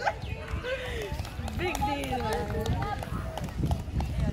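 Boys' voices calling and chatting, with a few sharp slaps of hands meeting as two youth football teams shake hands down a line.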